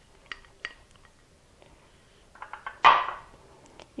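Small glass prep bowls and a large glass mixing bowl clinking and tapping as chopped scallions are tipped in: a few light ticks early on, a cluster of taps about two and a half seconds in, then a louder knock just before three seconds.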